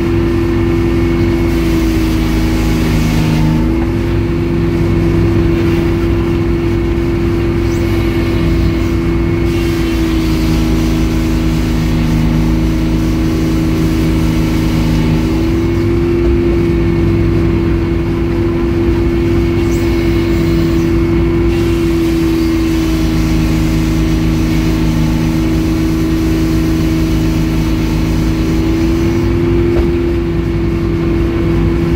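Rebuilt Edmiston hydraulic circular sawmill running steadily, its motor humming loudly while the large circular blade saws through a log on the carriage. The hum dips briefly in pitch a few seconds in and again about halfway.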